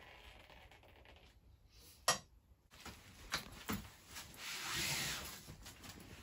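A sharp click about two seconds in, then a few light knocks. After that comes a long rustling swish as a large thin white sheet is shaken out and lowered over a wet painting, loudest near the end.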